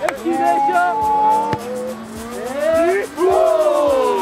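Several young men's voices crying out in drawn-out, rising and falling 'ooh' calls, a group reaction to a shot that only just misses, over background music. A single sharp knock comes about one and a half seconds in.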